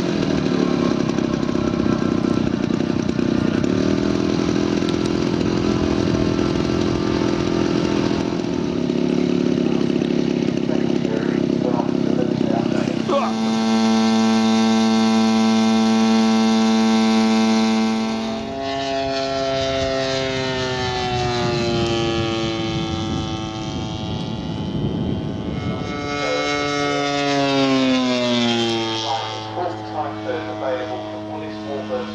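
Single-propeller engine of a large radio-controlled warbird model aircraft. For the first part it runs hard and steady, then its note holds clean and even for a few seconds. In the second half its pitch falls in long glides as the model flies past overhead, twice.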